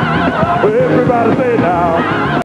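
Gospel choir singing with wide, wavering vibrato over instrumental backing.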